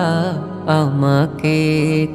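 A Bengali devotional song: one voice sings long, wavering notes over a steady low backing drone.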